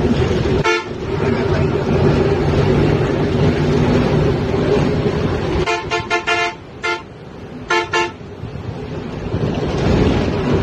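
Bus engine and road noise inside the moving bus, with a vehicle horn tooting: one short toot about a second in, a quick run of five or six short toots around six seconds in, then two more near eight seconds. The engine and road noise drop for a few seconds after the run of toots.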